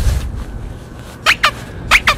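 Wind rumbling on the microphone, with three short high-pitched squeaks or calls about a second in and near the end.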